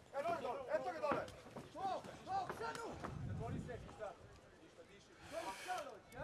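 Raised voices shouting over the arena's background noise, followed by a short hiss near the end.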